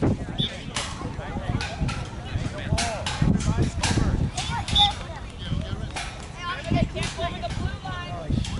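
Indistinct voices of sideline spectators and players calling out, with many short, sharp knocks scattered through.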